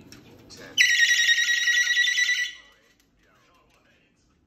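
Moluccan cockatoo giving one loud, long, high-pitched call that starts about a second in and holds steady for nearly two seconds before dying away.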